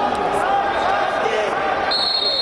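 Several voices calling and shouting over one another in a large sports hall during a wrestling bout. A steady high electronic tone sets in right at the end.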